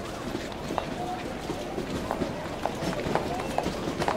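Indistinct background chatter with scattered clicks and knocks.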